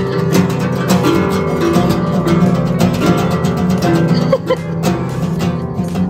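Two acoustic guitars strummed steadily and rapidly by beginners who can't play yet, a continuous jangle of ringing strings.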